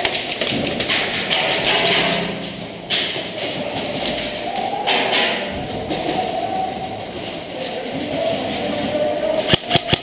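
Background music plays over an indoor room's noise, with scattered thumps and taps. Near the end comes a quick run of three sharp cracks.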